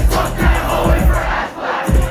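Hip-hop music playing loud over a concert PA, heard from inside a shouting crowd. The bass and high end cut out for about half a second near the end, leaving mostly the crowd's voices, then the music comes back.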